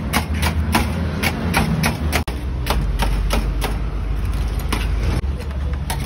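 Metal spatula chopping through a coil of syrupy halka tatlısı against a metal tray: quick sharp taps about three or four a second, thinning out after a sudden break about two seconds in. A steady low hum runs underneath.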